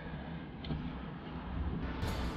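Low rumble of handling noise on a hand-held camera's microphone, with one faint light click about two-thirds of a second in.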